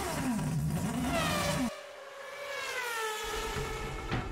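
Engine-revving sound effect, its pitch rising and falling in sweeps. Just under two seconds in, the low rumble drops out and a long falling glide follows, settling into a steady tone.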